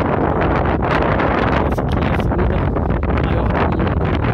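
Strong wind buffeting the microphone: a steady, loud rumble of wind noise.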